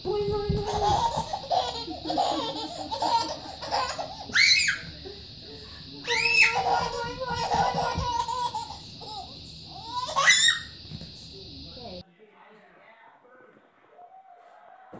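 A baby laughing hard in repeated belly laughs broken by several high, rising squeals. The laughter stops abruptly near the end.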